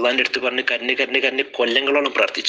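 Speech only: a man lecturing in Malayalam.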